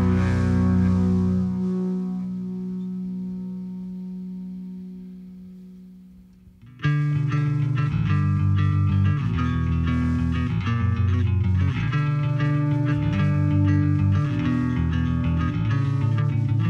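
A rock band's distorted electric guitar chord rings and fades away over about six seconds. Just under seven seconds in, the band cuts back in loudly with a bass-guitar-led riff, the low notes changing about once a second.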